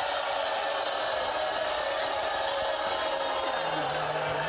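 Talk-show studio audience applauding: a steady, dense crowd noise that holds at one level throughout.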